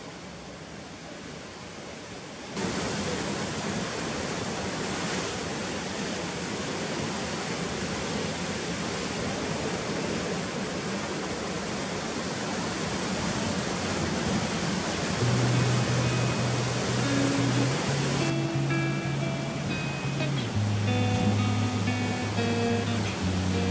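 Heavy sea surf surging and breaking around rocks: a steady rush of white water that gets suddenly louder about two and a half seconds in. Guitar music comes in over it from about halfway.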